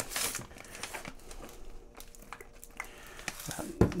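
Plastic vacuum-seal bags crinkling and rustling as they are handled, with faint small clicks, and a single sharp thump near the end.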